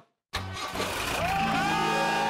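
Open jeep's engine starting up suddenly after a brief silence, with music coming in over it.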